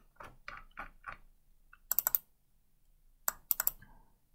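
Computer mouse clicks: a run of soft ticks, then a quick cluster of sharp clicks about two seconds in and another a little after three seconds, like double-clicks opening folders.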